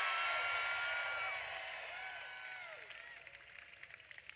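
Crowd applauding and cheering, with a few drawn-out shouts in the first half, dying away steadily toward the end.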